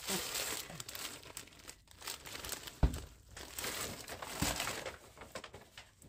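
Brown paper grocery bag rustling and crinkling as it is handled and unpacked, with two soft knocks about three and four and a half seconds in.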